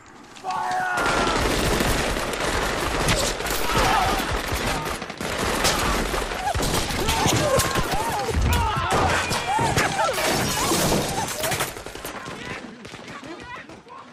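Dense, continuous gunfire in a film battle scene, many shots overlapping, with men shouting over it. The firing thins out and drops in level about twelve seconds in.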